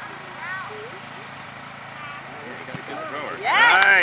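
Faint shouts of distant voices over steady outdoor background noise, then a loud drawn-out shout close to the microphone near the end.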